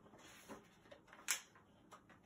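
A picture book's page being turned: a faint paper rustle with a short, sharp flick of the page about a second in.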